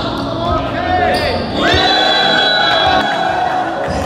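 Basketball bouncing and thudding on a hardwood gym floor, with players' voices shouting and cheering in a large echoing hall.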